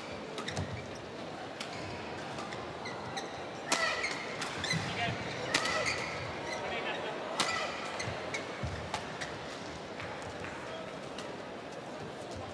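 Badminton rally: sharp racket strikes on a shuttlecock, coming every second or so, with the busiest exchange from about four to eight seconds in, over the murmur of an indoor arena.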